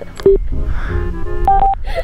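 Background music with two short electronic beeps, a lower one early and a higher one near the end. These fit a motorcycle helmet intercom being switched on or connecting.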